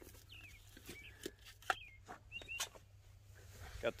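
Faint bird chirps outdoors, several short calls scattered through, with a few light clicks between them.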